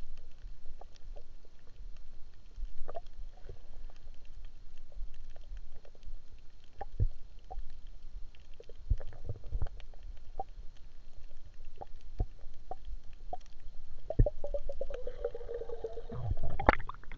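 Water sloshing and rumbling around the camera, with many scattered small clicks and knocks and a short gurgle near the end.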